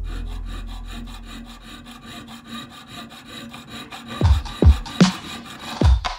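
Jeweller's piercing saw cutting a sterling silver strip, quick even rasping strokes. Background music fades out at the start, and a beat with deep kick drums comes in over the last two seconds, louder than the sawing.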